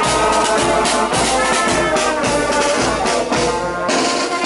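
Marching band playing on the move: saxophones, brass and a sousaphone hold chords over regularly beaten snare and bass drums.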